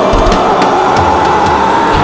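Live progressive metal band playing: distorted electric guitars and drum kit under one long held note that rises and falls slightly in pitch.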